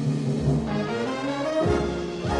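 Dance orchestra playing an instrumental interlude, its brass section of trombones and trumpets leading over a bass line; a new brass chord comes in about one and a half seconds in.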